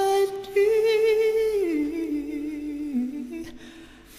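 A solo male voice sings a sustained, hum-like note with almost no accompaniment. After a brief break a quarter second in, it holds a slightly higher note with a light vibrato, then steps down in pitch and fades out near the end.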